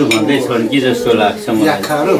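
Cutlery clinking on plates as people eat, under continuous talking.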